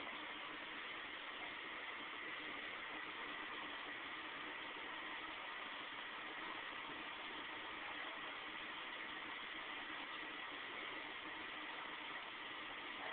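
Steady low hiss of background noise with a faint constant hum and no distinct events, typical of a home camcorder's recording noise and room tone.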